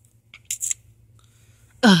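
A few brief scratchy rustles about half a second in as plush toys are moved by hand on a fabric couch, then a child's voice says "ugh" near the end.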